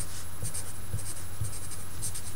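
Sharpie marker writing on paper: short scratching strokes, about two or three a second, over a steady low hum.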